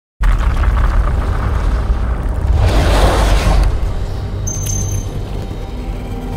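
Intro music for an animated title card, with a deep booming bass, starting abruptly just after the start. A whooshing swell rises and falls about three seconds in.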